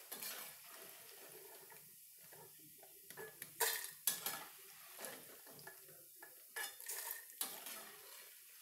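A steel slotted spoon scraping and clinking against a steel kadhai while stirring maize poha frying in oil, over a faint frying sizzle. The clinks come in two clusters, near the middle and again toward the end.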